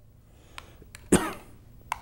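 A spoon scooping mayonnaise out of a clear jar, with a few faint clicks of the spoon against the jar. About a second in, a short, sharp vocal sound, a clipped 'a' or a small cough, is the loudest thing.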